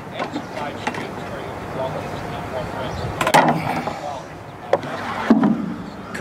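Tomato-cage wire clinking and rattling as its leg ends are bent over with a hand tool, the wire knocking against a plastic bucket. A sharper clatter comes about three seconds in, and there is a heavier handling knock of the bucket near the end.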